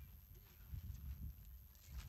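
Faint low thumps and light rustling, strongest about a second in and again near the end.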